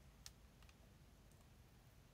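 Near silence: room tone, with one faint click about a quarter of a second in and two fainter ticks after it.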